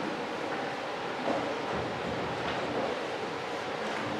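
Steady background hiss of a room, with faint shuffling and rustling as people step into place and handle folders.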